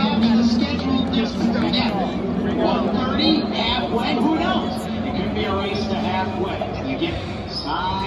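Grandstand crowd chatter, many voices overlapping, over a steady low hum.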